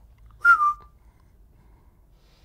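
A person whistles once, a short single note that slides slightly down in pitch, about half a second in.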